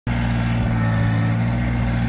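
Kubota compact tractor's diesel engine running at a steady speed as the tractor drives along: an even, unchanging hum.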